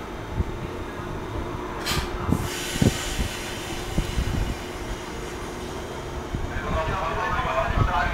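JR Kyushu 415 series electric multiple unit starting to pull out from a station platform. There is a short blast of compressed-air hiss about two seconds in, and the train noise grows toward the end as it gets moving.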